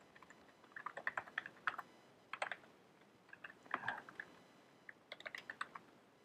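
Typing on a computer keyboard: quiet clusters of keystrokes in several short runs with pauses between them.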